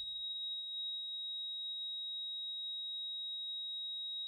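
A single steady high-pitched electronic tone, held at one unchanging pitch.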